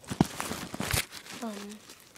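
Plastic wrappers of menstrual pad packages crinkling as they are handled, with a couple of sharp clicks, one just after the start and one about a second in.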